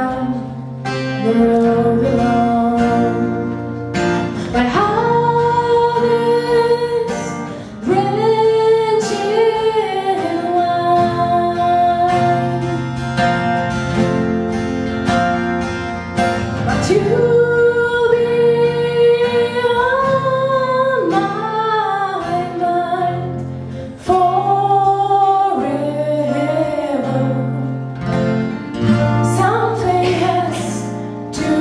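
A woman sings a slow song accompanied by two nylon-string classical guitars, with a plucked bass line under the held, gliding vocal notes.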